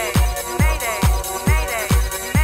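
Early-1990s rave techno track: a steady four-on-the-floor kick drum about twice a second under synth notes that bend up and fall away in pitch.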